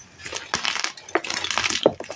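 Hands squeezing and crumbling blocks of dyed, reformed gym chalk: a dense run of dry crunches and crackles that starts a moment in.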